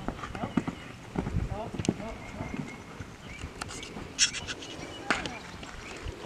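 A horse's hoofbeats on sand arena footing, mixed with short fragments of a person's voice.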